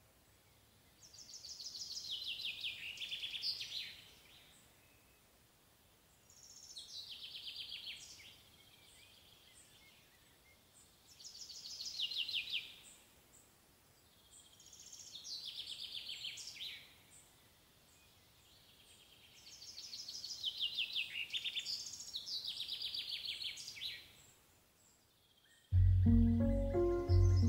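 A songbird sings the same short phrase over and over, a few seconds apart. Each phrase is a fast, high trill that steps down in pitch, heard over faint outdoor background noise.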